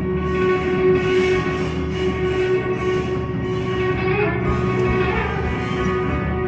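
Live band playing: guitars, keyboard and drums together, with a held note running under it and cymbal washes on top.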